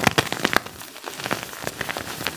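Gym chalk blocks topped with calcium carbonate powder being crushed in bare hands: dense, crisp crumbling and crackling, thickest in the first half second.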